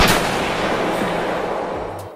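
A single rifle shot, sharp and loud, followed by a long echoing decay that fades away over about two seconds.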